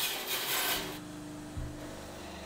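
Bandsaw cutting through wood with a harsh rasping hiss that stops about a second in, after which the saw runs on with a steady hum and a single low thump.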